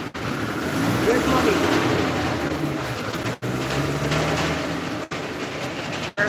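Voices of a gathered crowd talking over a steady, loud rumbling noise; the sound cuts out briefly twice.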